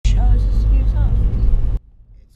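Loud low rumble of a car driving along a road, heard from inside the cabin, with a person's voice over it. It cuts off abruptly shortly before the end, leaving only faint road noise.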